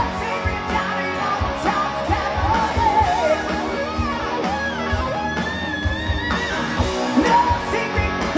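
Live hard-rock band playing, a singer's voice over electric guitar, bass and drums, heard from the audience. A long held high note comes about five seconds in.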